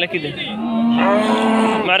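A cow mooing: one long, steady moo starting about half a second in and growing louder before it stops near the end.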